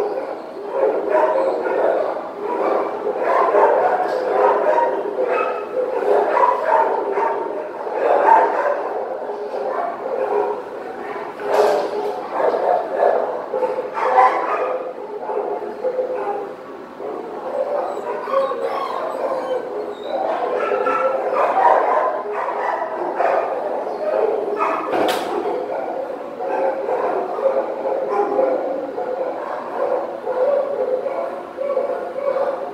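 Shelter kennel din: dogs barking and yipping over one another without a break, echoing in the kennel room. A few sharp knocks stand out, at about 12, 14 and 25 seconds in.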